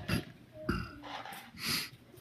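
A man's short, low throat sound about two-thirds of a second in, then a breath-like hiss near the end, quieter than his speech on either side.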